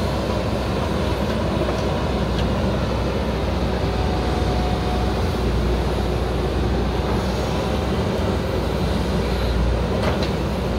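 JCB 3DX backhoe loader's diesel engine running steadily while the backhoe digs soil.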